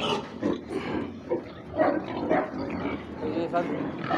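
A pen of about eighty six-month-old pigs making short, irregular grunts and moving about.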